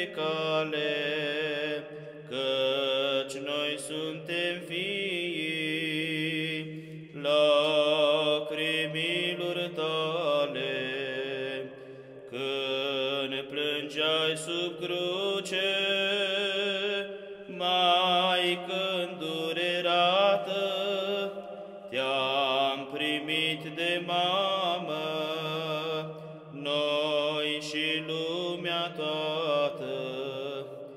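Romanian Orthodox church chant: a sung melodic line with vibrato over a steady held drone, in phrases of a few seconds with short breaths between them.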